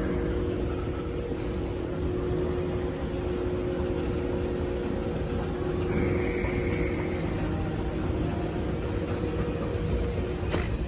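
Schindler 9500AE inclined moving walkway running under load, a steady mechanical hum and rumble with a steady low tone. A brief higher-pitched sound joins in for about a second around six seconds in.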